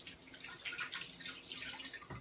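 Kitchen tap running and hands being rinsed under it, the water splashing unevenly.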